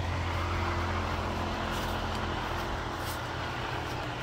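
A motor engine running steadily with a low hum, strongest in the first couple of seconds and then easing off.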